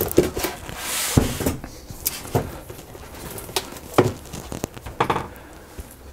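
A rigid cardboard product box being handled and opened: a brushing slide of the lid about a second in, then a few light knocks and taps of cardboard and packaging.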